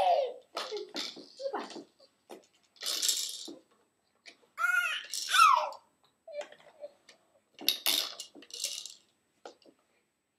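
Plastic baby activity-centre toys being turned and handled: short bursts of clicking and rattling. Around the middle there is a brief voice sound whose pitch rises and falls.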